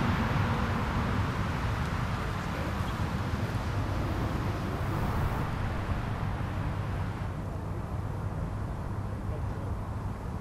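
Steady outdoor background rush with no distinct events. Its higher hiss thins out about seven seconds in.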